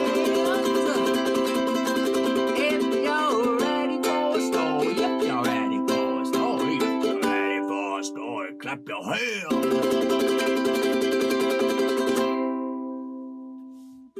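Ukulele strummed in a steady rhythm, with a man's voice singing along in places. About nine and a half seconds in, a last chord is struck and left to ring, fading away near the end.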